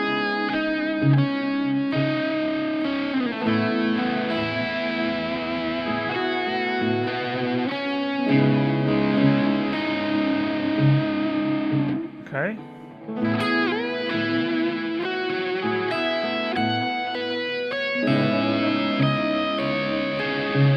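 Ibanez electric guitar playing an improvised lead built from two- and three-note chord shapes (dyads, triads and sus2 shapes) in C sharp minor. Several notes are bent, and there is a short break a little past halfway.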